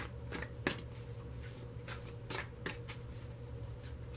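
Tarot cards being shuffled by hand: an irregular string of quick papery slaps and clicks, the sharpest right at the start and again about two-thirds of a second in, over a steady low room hum.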